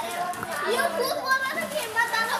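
Young children's voices, high-pitched calls and chatter, as they play in a plastic paddling pool, with water splashing under them.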